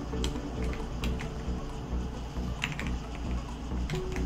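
Computer keyboard keystrokes, a scattered run of separate clicks at an uneven pace.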